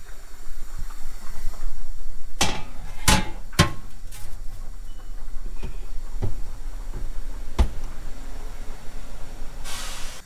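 An oven door opened, a glass baking dish set onto the oven rack and the door shut: a series of sharp clacks and knocks spread over several seconds, with a low steady hum underneath and a brief hiss near the end.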